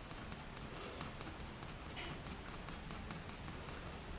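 Fine-tipped Uni Pin fineliner pen scratching faintly across textured NOT-pressed watercolour paper in a run of short strokes.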